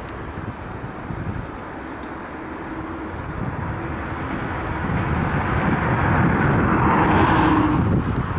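Vehicle engine and road noise swelling steadily over the last three seconds, loudest near the end.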